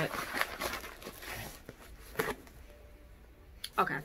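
Rustling and crinkling of a parcel's packaging being opened by hand, a quick run of rustles in the first second and a half and one more sharp rustle about two seconds in, then quieter.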